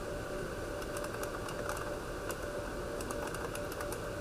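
Computer keyboard typing: quick key clicks in two runs, one about a second in and one about three seconds in, over a steady background hum.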